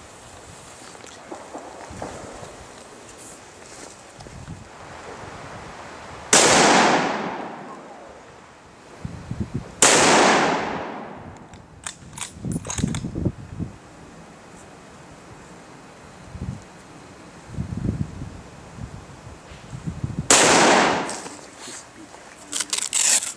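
Three shots from a bolt-action Savage rifle in .308, each a sharp crack followed by a long echoing tail. The first two come about three and a half seconds apart, and the third about ten seconds after that.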